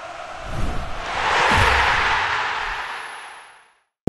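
Intro sting sound effect: a rush of noise with a few low thumps that swells to a peak about halfway through, then fades out just before the end.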